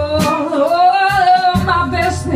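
Live blues band playing a slow jam, with a wordless sung line that bends up and wavers. Underneath are a bass line and regular cymbal strokes.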